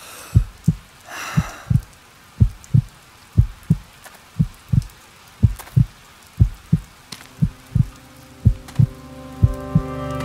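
Heartbeat: a low double thump repeating about once a second. Music swells in under it during the second half.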